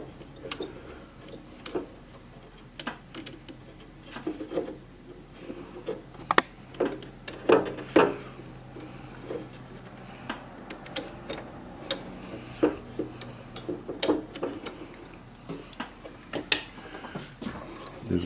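Irregular small clicks and taps of insulated spade connectors being handled and pushed onto the terminals of a heat press's control board.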